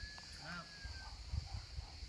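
Distant players' shouts on an outdoor football pitch, one short call about half a second in. Under it run a faint, thin whistling tone of about a second and a steady high hiss.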